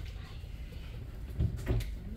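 A few short knocks and clunks, the loudest cluster about one and a half seconds in.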